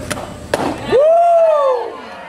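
A softball smacks into the catcher's mitt, followed by a loud, drawn-out shout of about a second whose pitch rises and then falls.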